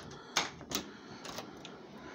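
A few sharp clicks and knocks, the loudest about half a second in, over a faint steady background.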